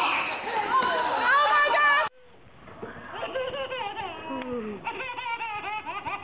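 Crowd of children shouting and squealing excitedly, then after an abrupt cut about two seconds in, quieter voices and laughter.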